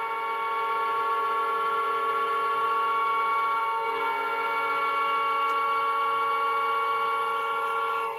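Hockey goal light's built-in goal horn sounding through its own speaker, triggered by its remote: a long steady horn of several tones together.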